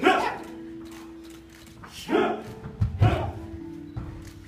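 Kung fu students give sharp, loud shouts while performing a Fu Jow Pai (tiger claw) form: one at the start, one about two seconds in and one about three seconds in. The last shout comes with a low thump, like a stamp on the floor.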